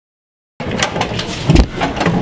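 Dead silence for about half a second, then an abrupt cut into loud backstage commotion: a noisy jumble of crowd and movement with scattered knocks and a heavy thump about one and a half seconds in.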